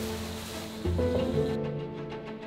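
Background music of sustained low notes, with a new chord entering about a second in, over a faint hiss that cuts off suddenly near the end.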